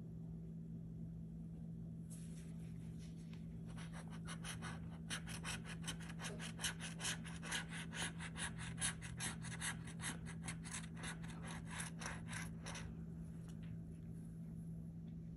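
A metal scratcher tool rubbing the coating off a lottery scratch-off ticket. It starts with a few slower scrapes about two seconds in, then goes into rapid back-and-forth strokes, about five a second, and stops shortly before the end. A steady low hum runs underneath.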